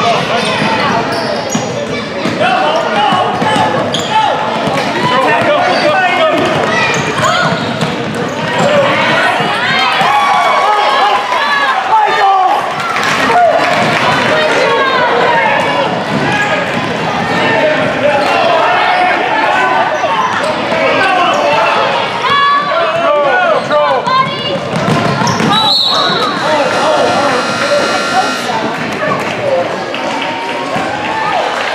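Basketball game in a gym: a ball dribbling on a hardwood floor amid continuous shouting from players and spectators, with a high whistle-like tone near the end as play is stopped.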